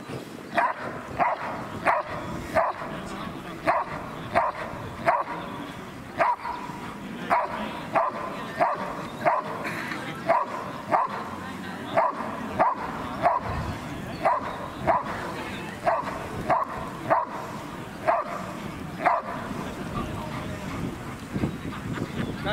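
A young dog barking steadily at a decoy in a bite suit, short sharp barks coming a little under two a second for about nineteen seconds before stopping.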